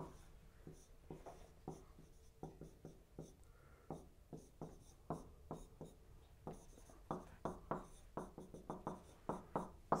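Dry-erase marker writing on a whiteboard: a run of short, irregular strokes and taps that come more often in the second half.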